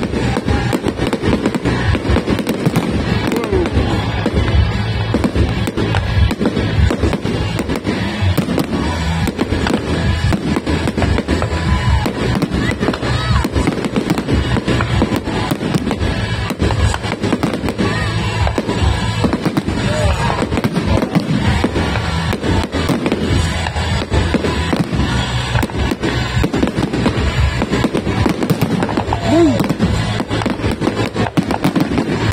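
Fireworks display in a full barrage: aerial shells bursting in quick succession, a continuous rattle of bangs and crackling.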